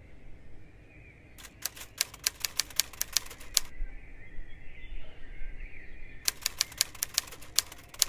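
Typewriter keystroke sound effect: two runs of rapid key clacks, the first about a second and a half in and the second from about six seconds, typing out on-screen titles.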